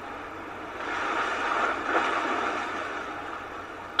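Soft surf washing on a sandy beach: a rushing noise that swells in about a second in and slowly fades.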